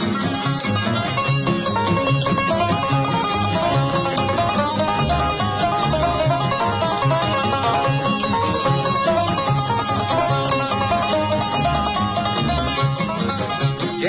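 Instrumental break of a country-style song: plucked string instruments and guitar play over a steady, pulsing bass line, with no singing.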